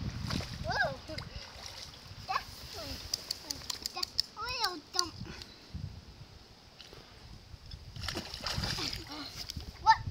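Shallow river water splashing and sloshing close by, with a young child's high voice in several short cries and calls.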